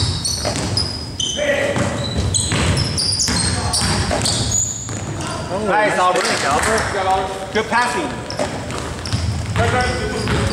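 Basketball game on a hardwood gym floor: sneakers squeaking in short high chirps, the ball bouncing, and players' voices calling out, mostly in the second half. All of it echoes in a large hall.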